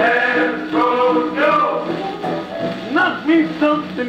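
A 1940s Okeh shellac 78 rpm record of big-band swing playing on a Califone record player: a male vocal over the band.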